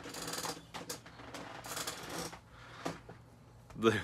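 Handling noise as a leather-sheathed fixed-blade knife is picked up off a playmat: two spells of rustling with a few light clicks between them.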